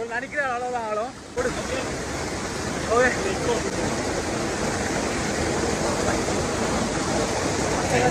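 Steady rush of a small waterfall pouring into a rock pool, coming in suddenly and loud about a second and a half in. A man's voice is heard at the very start, and a short call comes around three seconds.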